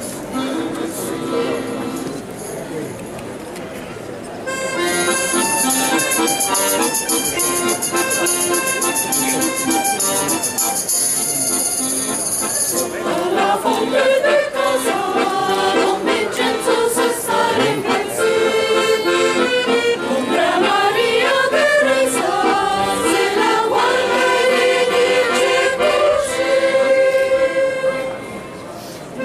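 Accordion playing a folk tune in a steady, loud introduction. About thirteen seconds in, a mixed choir of men's and women's voices comes in singing with it.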